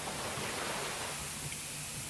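Steady hiss with a faint low hum underneath, and no distinct events.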